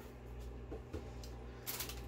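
Faint handling of snack packaging: a couple of light knocks, then a brief crinkly rustle near the end as plastic snack bags are picked up, over a low steady hum.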